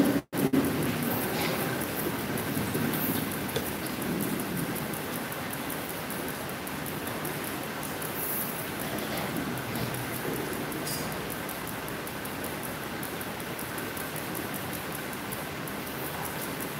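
Steady hiss of background noise, with a brief dropout in the sound just after the start.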